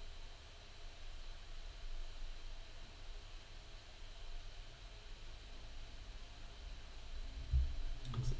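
Quiet room tone: a steady low rumble and faint hiss on the microphone, with a single soft low thump near the end.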